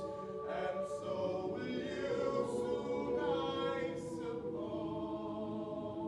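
Mixed-voice school choir singing a cappella: sustained chords broken by a few short sung 's' sounds, moving and fuller in the middle, then settling onto a long held chord near the end.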